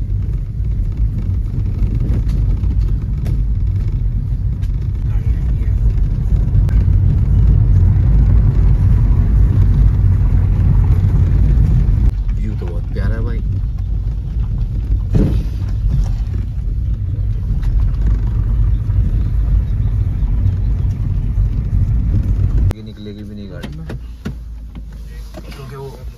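Road and engine noise inside a moving car's cabin: a steady low rumble that drops away sharply near the end.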